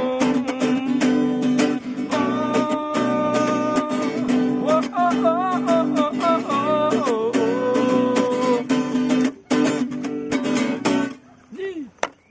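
Acoustic guitar strummed in a steady rhythm under a man's singing of long, held notes, some wavering; the playing stops near the end, leaving a short fading note.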